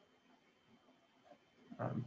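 Near silence, then near the end a short, rising intake of breath just before the presenter speaks.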